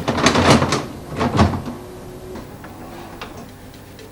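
A VHS cassette being pushed into a video recorder's slot: plastic clatter and clunks as the loading mechanism takes it in, loudest in the first second and a half, then quieter mechanism sounds.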